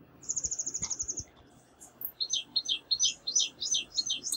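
Bird chirping: a fast, high trill lasting about a second, then, in the second half, a quick run of short chirps that each fall in pitch.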